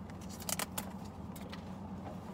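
Metal handbag hardware clinking and rattling in a few quick clusters as bags are handled, over a steady low hum.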